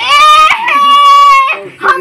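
A loud, high-pitched drawn-out cry in two parts: a short rising call, then one steady note held for about a second.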